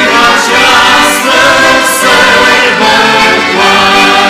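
Choir of children and adults singing a hymn, accompanied by accordions.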